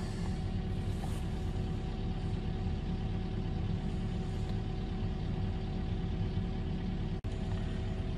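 CAT 308 excavator's diesel engine idling steadily, heard from inside the cab as an even hum. The sound cuts out for an instant near the end.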